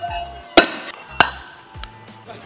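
Weight plates being loaded onto a steel barbell sleeve: two sharp metallic clanks a little over half a second apart, the first louder, over background music.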